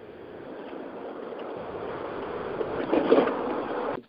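Road and wind noise from a moving vehicle, picked up by a caller's cellphone and heard through a conference-call phone line. It grows slowly louder and cuts off abruptly at the end.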